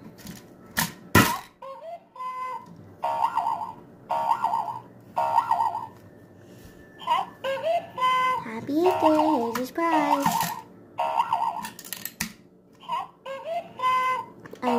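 Battery-powered toy bunny playing a string of short electronic chirping notes, repeated every half second or so, after two sharp clicks about a second in.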